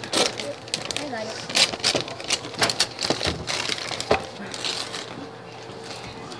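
Gift wrapping paper and tissue paper crinkling and tearing as hands pull a present open, in a run of irregular sharp crackles.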